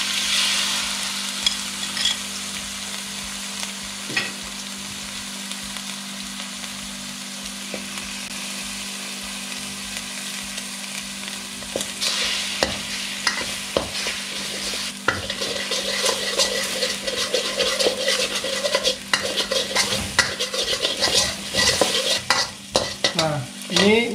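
Beaten egg poured into a hot, oiled wok, sizzling steadily as it sets. From about halfway, a metal spatula scrapes and clatters against the wok as the egg is broken up and scrambled, and the sizzle grows louder.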